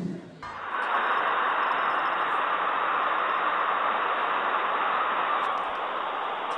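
A steady, even hiss of noise with no distinct events, cutting in abruptly about half a second in.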